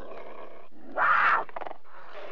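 A big cat growling, with a louder, harsher snarl about a second in.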